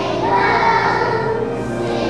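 A choir of kindergarten children singing together with instrumental accompaniment.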